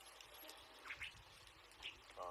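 Near silence: faint outdoor background, with two brief faint high-pitched sounds, one about a second in and one near the end.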